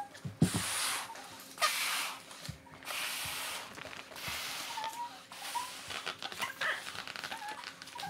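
A long latex balloon being blown up by mouth: several long, breathy blows of air into it, with short pauses for breath between them.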